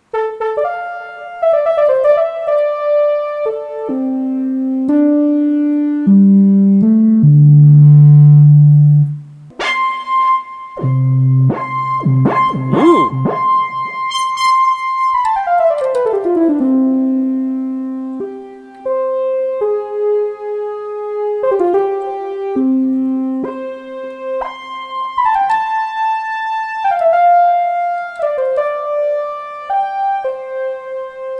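Roland JD-800 digital synthesizer played on its keyboard: a run of single notes and chords. About ten seconds in a chord with a held high note sounds, and a few seconds later its pitch slides smoothly downward.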